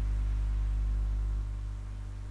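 Steady low electrical hum with a faint hiss. The deepest part of the hum drops a little about one and a half seconds in.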